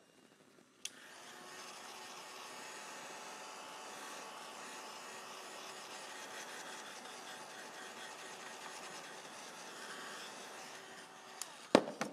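Handheld craft heat gun blowing steadily with a faint whine while it dries wet spray ink. It clicks on about a second in and off just before the end.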